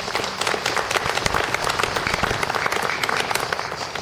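Audience applauding: many hands clapping steadily in a dense patter.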